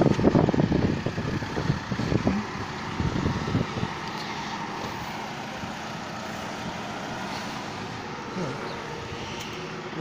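Street traffic noise from vehicles on the road alongside, louder and uneven for the first two or three seconds, then a steady hum.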